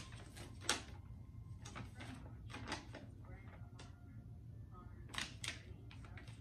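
A paper instruction sheet being unfolded and handled: irregular rustling and crackling, with a sharp crackle just under a second in and two more about five seconds in.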